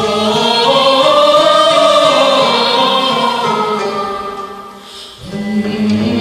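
A man and a woman singing an Azerbaijani folk song: a long, ornamented held phrase fades out about five seconds in. A lower voice then comes in with the next phrase.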